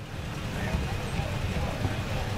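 Wind noise on the microphone with faint voices of people in the background.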